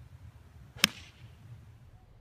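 A 6-iron striking a golf ball: one sharp crack a little under a second in, over a steady low rumble.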